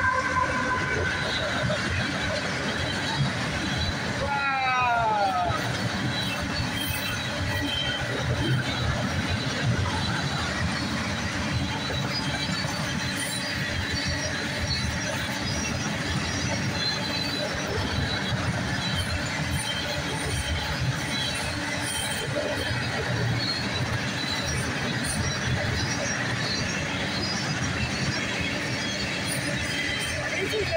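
Freight train passing close by: a locomotive and then loaded steel flatcars rolling past with a steady rumble and clatter of wheels on rail, and faint high wheel squeal now and then. A short falling pitched sound comes about four seconds in.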